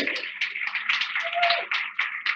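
Audience applauding: a dense, irregular patter of claps.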